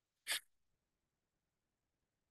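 A single short, breathy burst from a person, like a quick sniff or stifled sneeze, about a third of a second in; the rest is silence.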